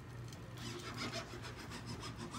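A metal-headed hand tool rubbed and scraped along the edge of an aluminium screen frame, dragging over the stretched screen mesh in scratchy strokes from about half a second in. A low steady hum runs underneath.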